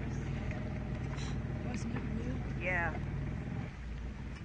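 A pontoon boat's motor running steadily at low speed, a low hum that eases off near the end.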